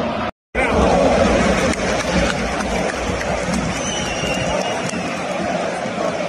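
Large football stadium crowd, a dense mass of fans' voices shouting and chanting. The sound cuts out completely for a moment about half a second in, then comes back louder.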